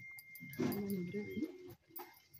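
An animal's call: one drawn-out, wavering call starting about half a second in and lasting about a second.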